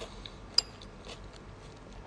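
A single sharp clink of cutlery against a plate about half a second in, with faint small taps over low room tone.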